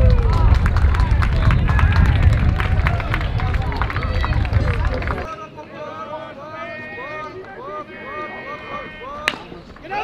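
Fans and players shouting and cheering over a heavy low rumble for about five seconds, then, after a sudden drop in level, quieter player chatter with drawn-out calls. A single sharp crack of a bat hitting a pitched ball comes shortly before the end.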